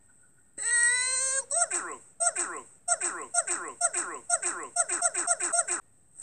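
A high-pitched cartoon voice gives a held cry about half a second in, then breaks into rapid, repeated laughter, each laugh falling in pitch, which stops shortly before the end.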